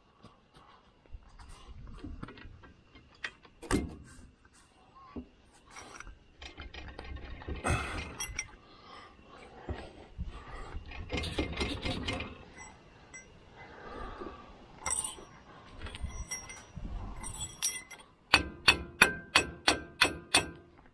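Steel hydraulic cylinder rod being pushed and pulled out of its barrel by hand, with irregular metal knocks, clunks and scrapes. Near the end comes a quick run of sharp, ringing metallic taps, about four a second.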